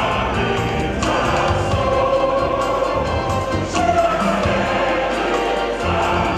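Choir singing with instrumental accompaniment, in held notes that change about once a second.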